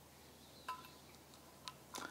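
Near silence broken by two faint light metallic clinks, each ringing briefly, about two-thirds of a second in and again near the end: small metal carburettor parts being handled.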